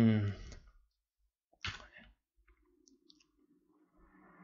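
A man's voice trails off, then a short sharp click about a second and a half later, followed by a few faint ticks.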